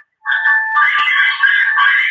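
Tinny, telephone-line audio from a caller's end: steady, music-like tones with no bass, starting a moment in. It sounds like the livestream's own audio being fed back down the phone line.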